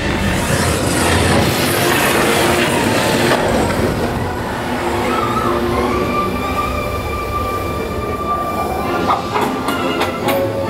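A jeep-style dark-ride motion vehicle rumbling and rattling along its track, heard from on board, with the attraction's music underneath. A steady high tone holds for a couple of seconds past the middle, and sharp clicks come near the end.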